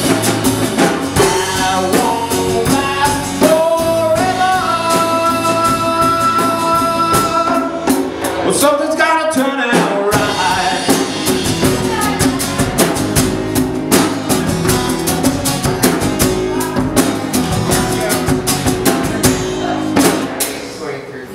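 A live song: a man singing to a strummed acoustic guitar, backed by a drum kit. About four seconds in he holds one long sung note for several seconds.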